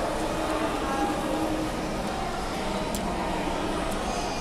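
Steady background murmur of a busy indoor public space, with faint distant voices. There is a single brief click about three seconds in.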